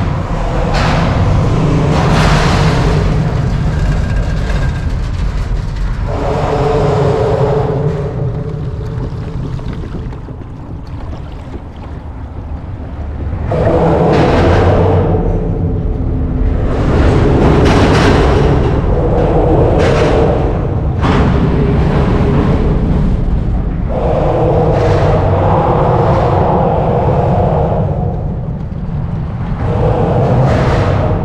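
Loud road traffic crossing a bridge overhead, heard from beneath the deck: a constant low rumble with a louder swell and knocks every few seconds as vehicles pass over.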